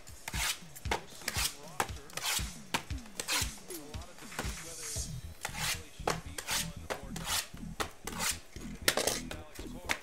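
Sealed, shrink-wrapped trading-card hobby boxes being picked up, slid and set down on a tabletop: a run of short knocks and scrapes, several a second.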